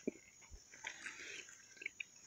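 Faint mouth sounds of someone chewing the sweet white pulp of a fresh cacao pod, with a few small clicks.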